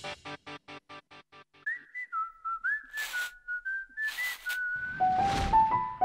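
The tail of a western-style cartoon theme. A short run of evenly repeated notes fades away, then a lone whistled melody steps up and down over two short hissing strokes. It ends on a swell of noise and a few rising notes.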